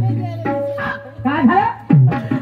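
A performer's voice over a PA system in short, sharply gliding calls, above a steady low hum.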